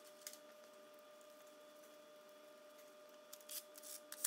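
Near silence: faint room tone with a steady faint hum and a few faint ticks near the end.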